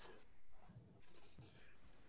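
A near-quiet pause on an open video-call microphone: faint room noise with a few soft, short noises.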